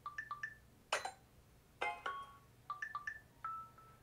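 Samsung Galaxy A14's built-in notification tones playing as previews one after another while entries in the list are tapped: about five short electronic chimes and blips, some quick runs of notes, the last a held note.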